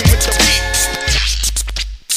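Hip-hop beat with a deep sustained bass line, drum hits and turntable scratching. The beat thins out near the end.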